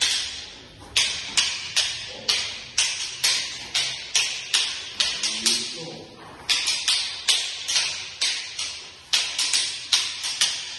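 Kali fighting sticks (bastons) striking one another in a partner drill: sharp stick-on-stick clacks about twice a second, in a steady rhythm with occasional quick doubles.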